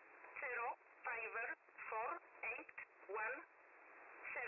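Numbers station E11 on 7850 kHz shortwave: a voice reading coded digits in English, about five short words, heard through a radio receiver that cuts out the low and high ends, with steady receiver hiss between the words.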